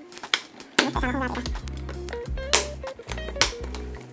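Background music with a steady bass line, over sharp clicks and knocks from the stiff plastic latch of a hard case being worked open.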